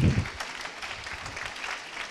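Audience applauding: a dense, steady patter of many hands clapping.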